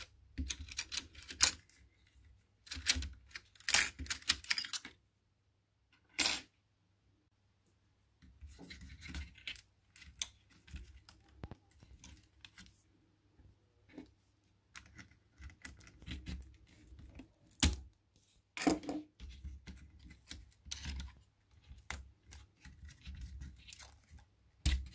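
Hand work inside an opened ThinkPad T61 laptop: irregular scratchy rasps, rustling and small plastic clicks as taped wires and cables are pulled loose around the CPU heatsink. It goes nearly quiet for a few seconds about five seconds in.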